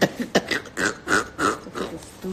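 A person's voice making a quick run of short bursts, about four a second.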